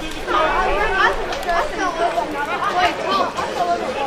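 Several people's voices calling out over one another, with no clear words: spectators and players reacting after a tackle.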